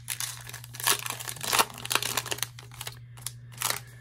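Allen & Ginter trading-card pack wrapper being torn open and crinkled by hand: a dense run of irregular crackles that thins out after about two and a half seconds, with one last crackle near the end.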